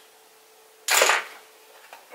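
A single sharp clack about a second in, from something handled close to the microphone, dying away quickly; a faint steady hum sits underneath.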